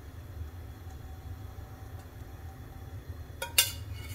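A steady low hum with a short burst of sharp clinks of a kitchen utensil against a pan about three and a half seconds in, as ghee is poured into a nonstick pan.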